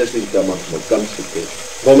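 Speech only: a man's voice speaking more quietly than the loud speech on either side, with a short pause before the louder speech resumes near the end.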